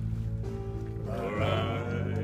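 Live music: steady sustained accompaniment notes, with a man's voice coming in about a second in on a held, wavering sung note.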